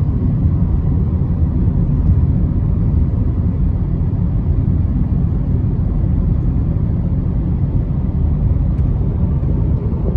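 Inside a moving car's cabin: a steady low rumble of tyre and engine noise from driving on the highway.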